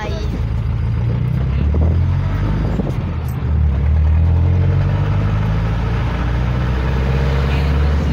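Vehicle engine and road noise heard from inside the passenger cabin while riding: a steady low rumble that swells a little about two seconds in and again a second and a half later.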